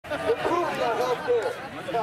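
People talking and chattering, with the words not made out.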